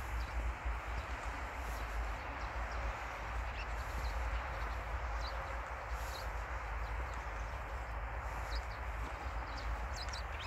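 Small birds chirping in short, scattered high calls over a steady rushing outdoor background with a low, fluctuating rumble.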